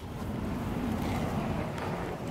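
Steady rushing noise on the microphone with no distinct events in it, as the phone is moved.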